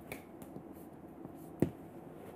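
Chalk on a chalkboard while writing a multiplication sign: faint light ticks, then one sharp click of the chalk against the board about one and a half seconds in.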